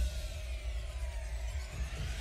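A steady low hum with a faint hiss above it.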